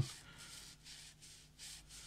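Escoda Ultimo synthetic squirrel-hair watercolour brush stroking on watercolour paper: several faint, short swishes in a row as it works the last of its paint into the gaps.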